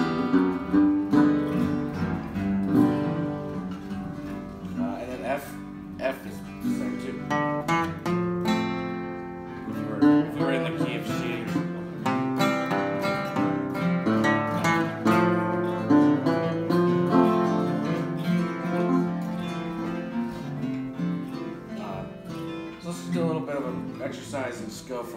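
Acoustic guitar played oldtime style: picked bass notes alternating with strummed chords, with two-note walking bass runs leading into each chord change.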